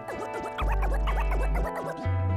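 DJ scratching on a Rane One controller's motorised platter: rapid back-and-forth strokes that make the sound swoop up and down in pitch, over a hip hop beat with a deep held bass note that stops shortly before the end.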